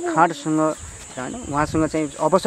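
Steady, high-pitched insect chirring, as from crickets, runs on without a break under a person speaking.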